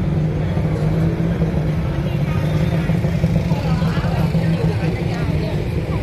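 Steady street traffic rumble with people talking in the background.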